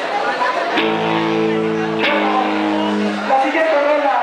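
Amplified guitar: two chords struck about a second apart, each left to ring for about a second before fading out, over background chatter.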